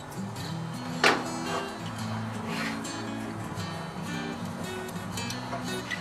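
Background music of plucked acoustic guitar notes, with one sharp click about a second in.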